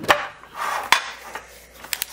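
Thin metal trading-card tin being opened by hand, its lid pried off the base: a sharp click at the start, a scraping rub, and another sharp metallic click about a second in.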